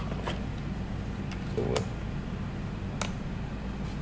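Light clicks of a plastic ID-card tray being handled and brought up to the front feed slot of an Epson L805 printer, the sharpest click about three seconds in, over a steady low hum.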